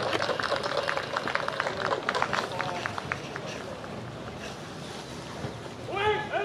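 Scattered hand-clapping from spectators in the stands, thinning out and dying away about three seconds in, over faint crowd chatter.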